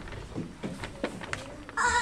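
A short lull with a few faint knocks, then about three-quarters of the way in a child's high voice starts a long wavering note.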